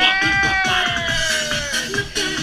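Loud live dance music with one long held vocal note over it, rising at first and then slowly sinking in pitch until it fades near the end.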